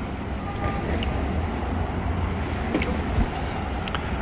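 City street traffic at an intersection: a steady low rumble of passing cars and engines.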